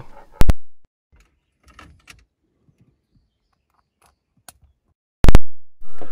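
Two loud, very short pops about five seconds apart, with faint handling rustles between them: a lavalier microphone's jack being pulled from and pushed into an iPhone as a Boya BY-M1 is swapped for a Rode smartLav+.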